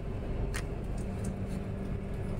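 Steady low rumble and hum of an Indian Railways passenger carriage, with a single short click about half a second in.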